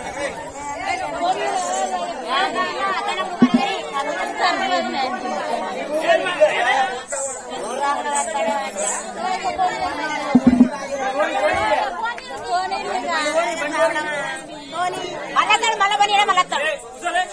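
People talking, voices overlapping in continuous chatter, with two short low thumps about a third of the way in and about two-thirds of the way in.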